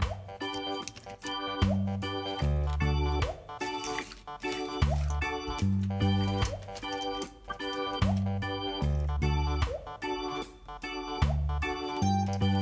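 Background music: a keyboard tune over a steady beat, with a bass line that repeats every few seconds.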